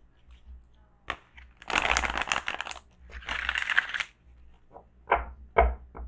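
A deck of large oracle cards being shuffled by hand: two rattling bursts of about a second each as the cards slide through the hands, then a few short, sharp taps of the cards near the end.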